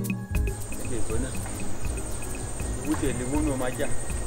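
A music cue cuts off just after the start, leaving insects trilling steadily and high-pitched in tropical bush. A man's voice comes in low and briefly, once about a second in and again near the end.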